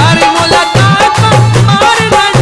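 Loud Mianwali folk song music with a steady beat: a low bass note about twice a second under a wavering melody line.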